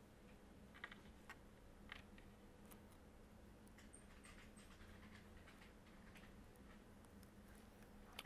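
Near silence: quiet room tone with a few faint small clicks and ticks of tweezer tips and a thin cable being worked into the plastic frame of an opened smartphone.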